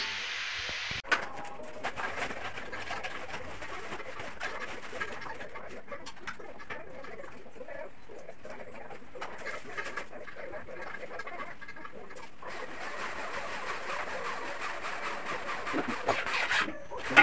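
Bird calls over steady background noise, with a short click about a second in.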